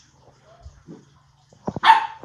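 Husky puppy giving a single short, sharp bark near the end, just after a few clicks on the tile floor.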